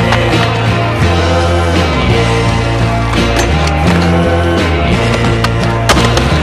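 Skateboard sounds over a music soundtrack: a board's trucks grinding along a concrete curb ledge, with sharp clacks of the board, the loudest near the end.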